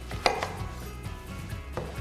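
Chef's knife cutting down through a whole red cabbage: one sharp, crunchy chop about a quarter second in as the blade splits the head and strikes the wooden chopping board, then a fainter knock near the end. Background music runs underneath.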